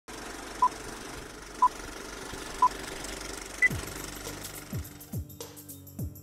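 Film-leader countdown sound effect: three short beeps a second apart and a fourth at a higher pitch, over a steady rattle and hiss. Music then starts, with bass swoops falling in pitch.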